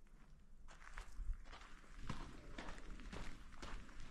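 Footsteps of someone walking on a rough, stony mine-tunnel floor, about two steps a second, starting to come through clearly a little under a second in, over a low steady rumble.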